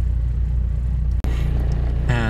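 Car engine and road noise heard from inside the cabin while driving: a low steady rumble. It breaks off for an instant a little over a second in, then carries on.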